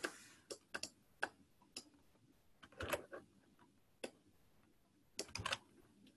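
Faint, sparse computer keyboard keystrokes: scattered single clicks, with two short runs of keys about three seconds in and again near the end.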